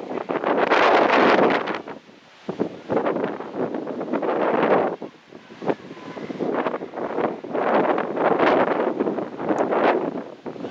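Wind buffeting the camera microphone in three long gusts, with brief lulls between them.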